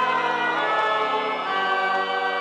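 Choral music: voices holding sustained chords, changing to a new chord about one and a half seconds in.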